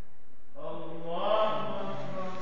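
An imam's chanted recitation in Friday prayer: a single man's voice starting about half a second in, holding long melodic notes.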